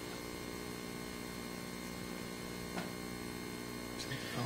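Steady electrical mains hum in the meeting's microphone and recording system, with one faint tick about three seconds in.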